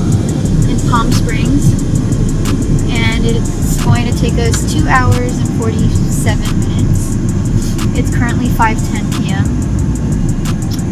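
Steady road and engine noise inside a moving car's cabin, with a voice rising and falling in pitch over it in short phrases every second or two.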